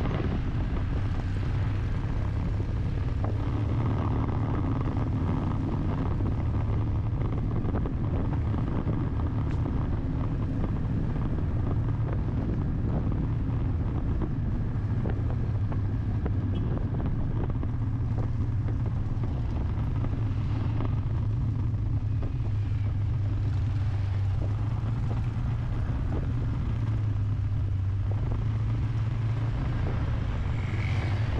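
A vehicle cruising on an open road: a steady, low engine hum under road and wind noise.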